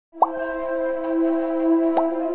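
Logo intro music: a held, steady electronic chord, with a short rising pop sound effect just after the start and another pop at the very end, timed to the appearing dots.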